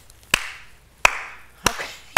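One person clapping slowly: three single, sharp hand claps a little over half a second apart.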